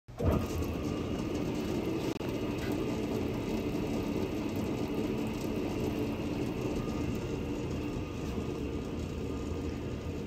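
Welding positioner's electric tilt drive, motor and gearbox, starting abruptly and running at its single fixed speed as the table tilts: a steady mechanical hum.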